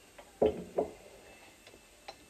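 Two knocks in quick succession, about half a second and just under a second in, the first the louder: a medicine bottle being set down and handled on a kitchen bench.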